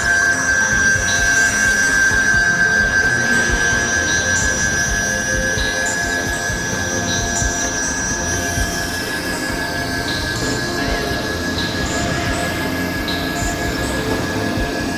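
Experimental electronic drone music of synthesizer tones: a steady high-pitched tone held over a dense, noisy low layer, with a higher tone gliding down a little past the middle and faint pings recurring about every second and a half.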